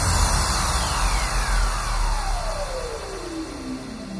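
Minimal techno breakdown: the drums drop out and a long downward sweep glides from very high to low over about four seconds, above a held deep bass, fading as it falls.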